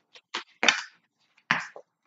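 Tarot deck shuffled by hand: a handful of sharp card snaps and slaps, the loudest about two-thirds of a second in.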